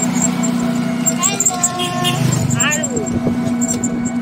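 Steady running hum of a moving open-sided passenger vehicle, heard from aboard, with brief voices over it about a second in and again near three seconds.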